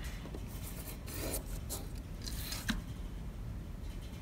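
Felt-tip marker scraping across paper as a plastic compass swings it around in an arc, with the plastic rubbing and a light click about two-thirds of the way through.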